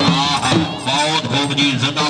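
Punjabi folk music: dhol drums beating steadily under a shehnai melody that bends up and down in pitch.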